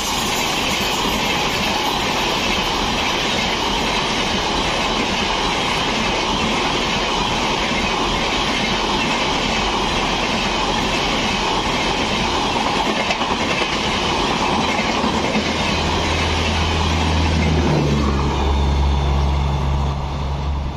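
LHB passenger coaches passing close by at speed: a loud, steady rush of steel wheels on rail. A deeper low rumble comes in over the last few seconds.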